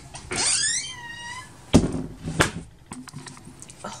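A cat meowing once, a high call that rises and then falls over about a second, followed by two sharp knocks.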